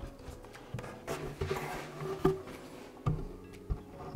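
Wooden boards being handled and stood upright on a workbench: irregular knocks and clunks of wood on wood, the sharpest a little over two seconds in, with scraping and shuffling between.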